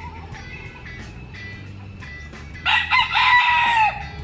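A gamefowl rooster crowing: one loud, close crow that starts about two-thirds of the way in and lasts a little over a second.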